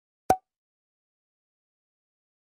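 A single bottle cork popping out: one short, sharp pop about a quarter of a second in.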